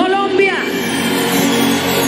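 A man's voice calls out briefly at the start, over background music of steady held chords.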